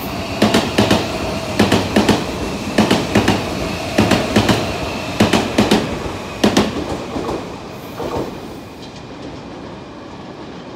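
Odakyu 30000 series EXEα Romancecar electric train passing at speed, its wheels clattering over the rail joints in groups of clicks about every second and a quarter, with a steady running hum underneath. The clatter thins out and gets quieter over the last few seconds as the train passes.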